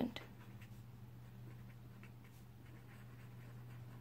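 Faint scratching of a marker pen's tip on paper as words are written by hand, in short irregular strokes over a steady low hum.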